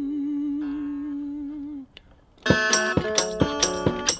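Live folk-blues music: a long, wavering held note over soft guitar tones fades out about two seconds in. After a brief pause, loud strummed guitar comes in with a steady thumping kick-drum beat, about three beats a second.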